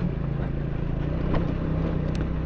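Motorcycle engine running steadily while riding over a rough gravel and rock track, a low even hum over a constant rush of road noise.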